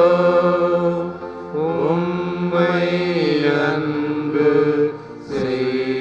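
Slow devotional hymn sung with long held notes that slide between pitches over a steady sustained accompaniment, pausing briefly about a second and a half in and again near five seconds.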